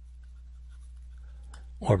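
Faint taps and scratches of a stylus writing on a tablet screen over a steady low hum, with a small click about a second and a half in.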